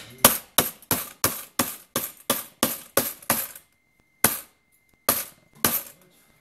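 A hammer striking the top of a metal tin-can coin bank to break it open: a quick run of about three blows a second, then a pause and three more spaced-out blows.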